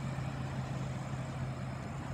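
2015 BMW 650i Gran Coupe's 4.4-litre V8 idling with a steady low hum.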